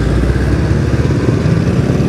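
Small motor scooter engine running at low speed with a steady low pulsing, its pitch rising a little in the second half as the scooter moves off into a U-turn.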